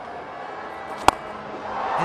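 A cricket bat strikes the ball once, a single sharp crack about a second in, over a steady murmur of stadium crowd noise.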